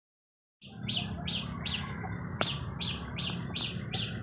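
After a brief silence, a bird calls with a short chirp repeated evenly about three times a second, over a low steady hum.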